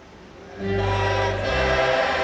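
Slow background choral music with long held chords. It is faint at first and swells back in about half a second in.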